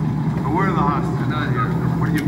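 Film dialogue played back into a room: a man's voice speaking over a steady low rumble from the soundtrack.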